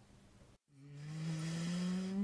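After a short silence, a man's drawn-out hum or held filler vowel fades in, growing louder and slowly rising in pitch as it leads into his next words.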